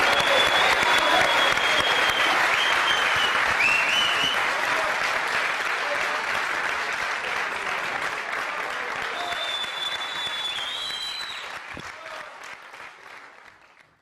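Studio audience applauding, a dense steady clapping that thins and fades away over the last few seconds.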